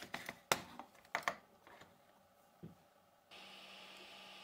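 Sharp hard-plastic clicks and knocks from a 3D-printed chain track and its wheels being handled: several in the first second and a half, one more a little past halfway. A steady faint hum comes in near the end.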